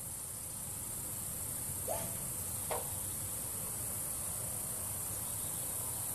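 Crickets chirring steadily in a high, even drone, with a low rumble underneath and two faint short sounds about two seconds in.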